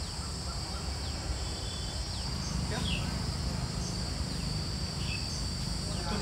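Outdoor orchard ambience: a steady high-pitched insect drone with several short, falling bird calls scattered through it, over a low rumble.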